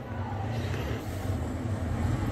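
Steady low mechanical hum with no clear strikes or beeps.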